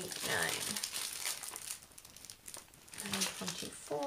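Small plastic bags of diamond-painting drills crinkling as they are handled and sorted. A brief voice comes in near the start and again about three seconds in.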